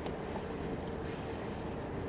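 Steady low rumble of a large passenger ship's machinery as the Queen Mary 2 passes close by, with a faint steady hum over it and wind on the microphone. The ship's horn is not sounding.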